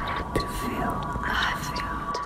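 Many layered human whispers, the recorded voices of a vocal ambient piece, swelling and overlapping over a few steady, sustained tones.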